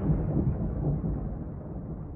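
The outro of a hardstyle track: a dense, noisy rumble with no beat, fading out as its upper range steadily closes off and it grows darker and duller.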